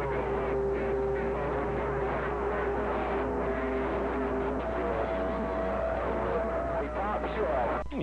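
Radio voices coming through a Yaesu transceiver's speaker on a strong incoming signal. The speech is garbled, with several stations keying over each other and long steady whistles from carriers beating against each other.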